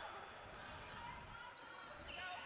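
Faint on-court sound of a basketball game: a ball being dribbled on a hardwood floor, with a few short, high squeaks of shoes.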